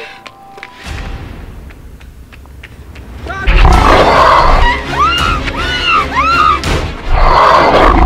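Horror film soundtrack: a deep rumble builds from about a second in, then loud monster roars with a shouted "Run!" come in about halfway through, and the sound surges again near the end.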